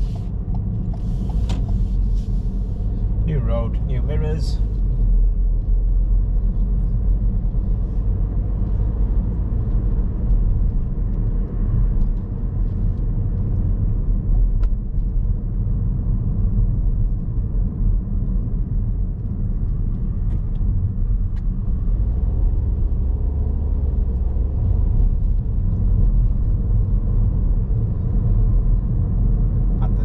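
Steady low rumble of a car being driven, heard from inside the cabin: engine and tyre noise on the road. About three seconds in there is a brief pitched, sweeping sound.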